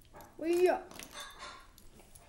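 A single short, high yelp about half a second in, rising and then dropping in pitch.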